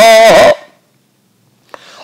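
A man's chanting voice holding the last syllable of a recited Sanskrit verse line, wavering in pitch and cutting off about half a second in. Then near silence, with a short mouth click and an intake of breath near the end.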